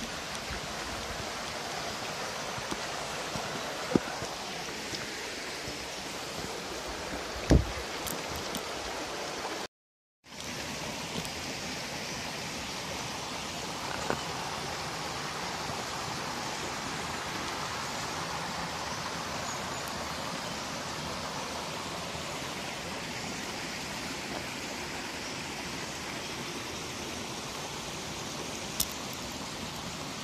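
Small mountain stream running over rocks: a steady, even rush of water. A couple of sharp knocks come in the first eight seconds, and the sound drops out briefly about ten seconds in.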